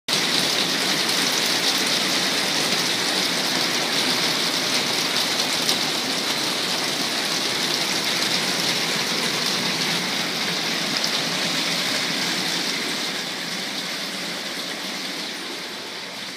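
Heavy rain pouring down, heard from indoors as a loud, steady hiss. It grows a little fainter over the last few seconds.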